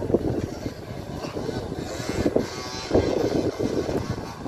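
Trail motorcycle engines revving as the bikes climb a dirt trail, heard from a distance with wind on the microphone; one engine note rises a little past the middle.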